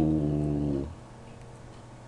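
A man's voice holding one flat, drawn-out hesitation vowel, an 'uhh', for most of a second. Then only a faint low hum.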